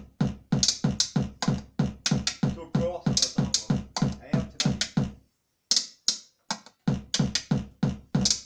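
Fast electronic tekno beat: a deep kick and bright hi-hat hits at about three a second. The beat cuts out a little after five seconds in, leaving one lone hit, and comes back about a second and a half later.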